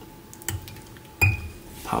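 Small fine-pointed fly-tying scissors snipping off the leftover CDC feather stem at the hook eye: two sharp metallic clicks, about half a second in and a louder one with a brief ring just past a second in.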